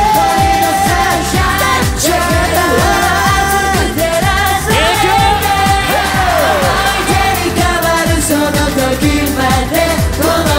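Live J-pop performance: singing into handheld microphones over an upbeat pop backing track with a steady, repeating bass beat.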